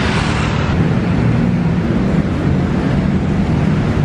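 Steady road traffic noise: a continuous low engine rumble under a hiss, with a brief swell of hiss at the start.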